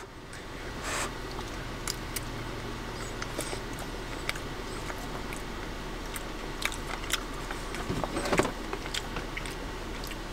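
A person chewing a mouthful of pasta close to the microphone, with scattered small clicks and a couple of louder moments, a little after a second in and about eight seconds in.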